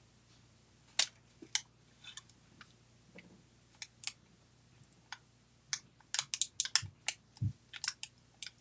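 Light plastic clicks and crackles of a clear stamp sheet being handled and a small clear stamp peeled off its backing, scattered at first and coming quicker near the end.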